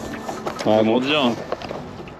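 A man's short exclamation, "ah", starting about half a second in and lasting under a second, over low background noise.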